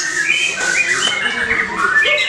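White-rumped shama (murai batu) singing: a quick run of clear whistled notes and short pitch glides.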